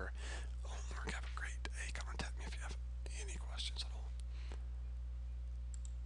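Faint whispering or breathy muttering over a steady low hum; the whispering fades out a little past the middle.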